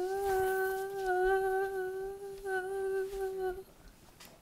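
A voice humming one long, steady note that breaks briefly about two and a half seconds in, resumes, and stops a little before the end.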